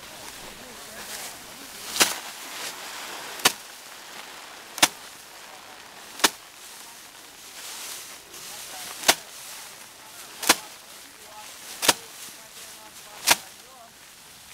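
Sheaves of harvested rice beaten by hand against a slatted wooden threshing bench, knocking the grain loose. Sharp whacks come about every second and a half, four of them, then a pause, then four more.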